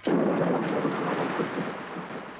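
A sudden thunder-like boom that rumbles on and slowly fades. It is a sound effect for a casserole dish being slammed into an oven.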